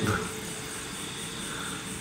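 Steady low background noise, a faint even hum and hiss with no distinct sound standing out.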